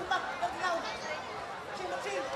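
Indistinct chatter of a spectator crowd: several voices talking at once at a moderate level, none of them clear.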